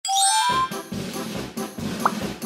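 A bright chime sound effect of three quick notes stepping upward in the first half second, then light background music with a steady beat.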